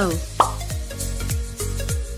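Background music with a steady beat, with a short falling 'plop' sound effect about half a second in.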